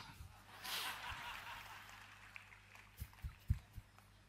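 Audience laughing, swelling about half a second in and dying away over the next couple of seconds; a few soft low thumps follow near the end.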